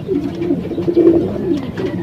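Domestic racing pigeons cooing, a run of low warbling coos that rise and fall and overlap one another.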